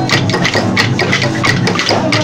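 Bumba-meu-boi sotaque de matraca percussion: many matracas, hand-held wooden clapper blocks, clacking together in a fast, steady rhythm of several strikes a second, with frame drums underneath.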